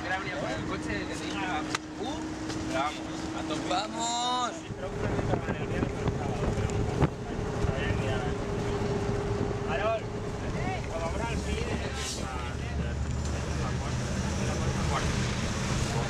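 Minibus engine running with a steady hum that steps up in pitch about five seconds in, under scattered indistinct voices and wind on the microphone.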